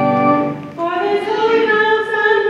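A sustained instrumental chord dies away, and just before a second in a woman's voice starts singing alone. The line slides up and then holds steady notes.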